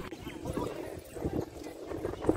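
Soft, irregular low thumps, a few a second, over a faint background murmur.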